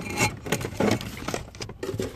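Handling noise: rustling, scraping and scattered light clicks as wiring, connectors and parts are moved about.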